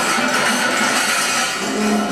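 Free-improvised ensemble music: a dense, steady, noisy texture with a few held tones, and a held low tone coming in near the end.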